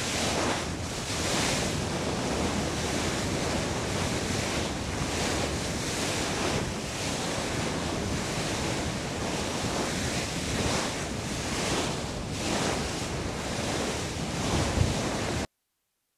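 Sea water rushing and breaking into foam alongside a moving ship, with wind buffeting the microphone, in irregular surges. It cuts off suddenly near the end.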